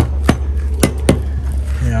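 Claw hammer knocking on the base of a weathered timber utility pole, four sharp strikes, testing whether the old pole is sound enough to climb; it seems relatively solid.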